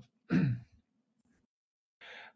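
A man briefly clears his throat once, then a pause with only a faint low hum.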